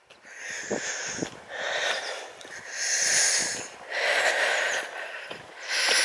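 A person's heavy, wheezy breathing while climbing uphill on foot, about one breath a second, each breath a rushing noise close to the microphone.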